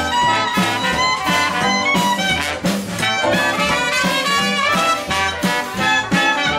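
Live Dixieland jazz band playing with trombone up front, over upright bass, drums and keyboard. The beat is steady, with the bass marking about two notes a second.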